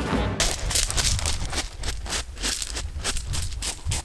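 Railway carriage in motion: a low rumble with a fast, irregular rattle of clicks. Music cuts off just after the start.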